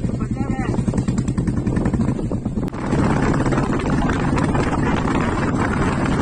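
Motorcycle engine running at low speed with a steady pulsing note. About three seconds in there is a click, then wind rushes over the microphone as the bike picks up speed.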